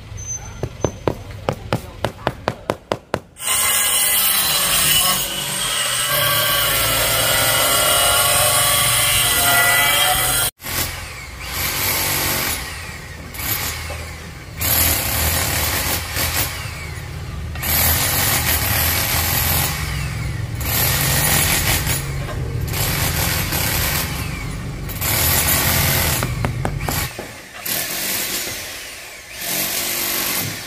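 A rubber mallet tapping a ceramic floor tile down into its mortar bed: about a dozen quick, evenly spaced knocks. Then a long stretch of loud rasping noise, coming in repeated strokes of a second or two.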